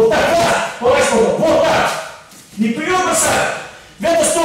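Speech: a voice talking in short phrases, with a brief pause in the middle.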